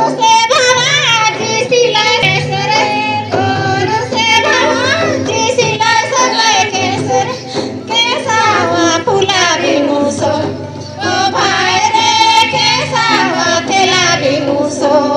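High female voices singing a Mundari folk dance song together, over a hand drum beating.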